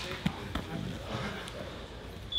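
Bodies shifting and thudding on grappling mats during a roll, with one sharp thud about a quarter of a second in and a few softer ones after.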